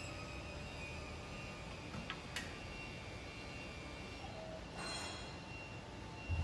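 Faint, steady hum of a DC-powered roll manipulator's side-shifter drive as it moves a clamped roll sideways. Two light clicks come about two seconds in, and a brief rustle near the end.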